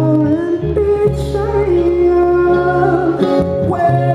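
A live band playing: an acoustic guitar picked under several voices singing in harmony, with a low bass note held through the middle for about two and a half seconds.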